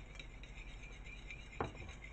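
Metal fork beating sour cream against a ceramic plate: quick, light clinks and scrapes of the tines on the plate. One louder short knock comes about a second and a half in.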